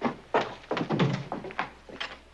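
Footsteps on a wooden floor: a short run of dull thunks, about five, irregularly spaced.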